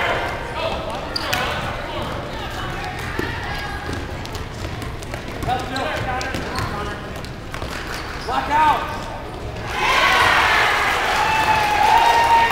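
Basketball game in a gym: a ball bouncing on the court, with spectators shouting and talking. The voices grow louder about ten seconds in.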